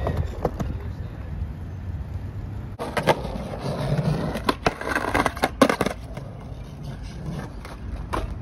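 Skateboard rolling on rough concrete with a steady rumble from its wheels. From about three seconds in come a run of sharp clacks and knocks from the board.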